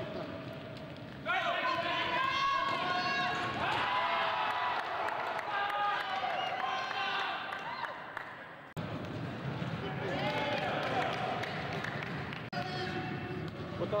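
Indistinct voices of basketball players calling out on an indoor court during a game, with sudden jumps in the sound about a second in and near nine seconds.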